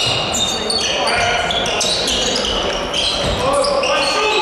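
Live basketball play on a hardwood court: many short, high-pitched sneaker squeaks as players cut and stop, with the ball bouncing.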